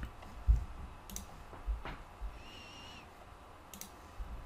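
A few scattered clicks from a computer mouse and keyboard, with a low thump about half a second in.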